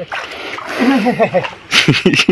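Water splashing as a fishing net is worked in shallow water, with a sharper splash near the end.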